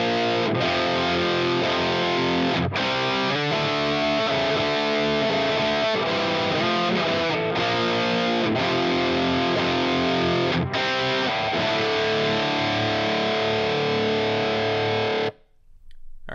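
Recorded loop of a heavily distorted electric guitar playing a chord riff, played back at its original pitch with the pitch shifting bypassed. It cuts off suddenly about a second before the end.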